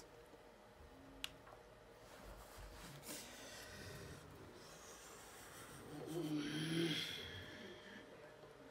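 A man breathing hard and straining, with a drawn-out groan of pain about six seconds in, as he works a finger locked by trigger finger.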